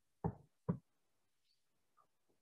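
Two short, dull knocks about half a second apart near the start, followed by faint ticks.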